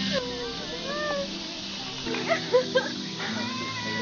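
Voices exclaiming and laughing in short gliding calls and bursts over background music.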